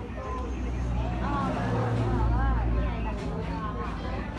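A motor vehicle engine hums, swelling louder in the middle and easing off near the end, under people talking.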